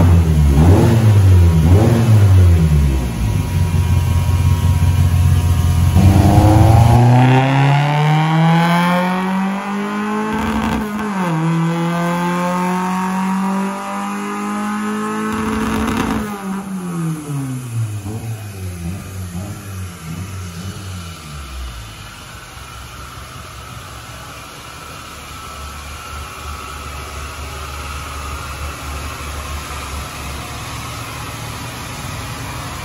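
A Fiat Uno 1.6R four-cylinder engine, straight-piped through a 4-into-1 exhaust, making a full-throttle pull on a chassis dynamometer with one more degree of ignition advance. It settles at first, then from about six seconds in revs rising steadily in pitch, with a brief dip near eleven seconds, up to a peak around sixteen seconds. It then winds down, leaving a lower steady noise.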